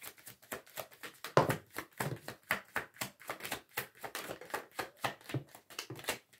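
A deck of oracle cards being shuffled by hand: a fast, continuous run of soft card clicks and slaps, several a second, stopping at the end.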